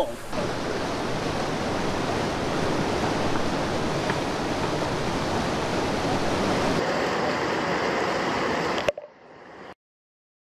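Steady rush of fast-running water, even and unbroken, cutting off suddenly near the end.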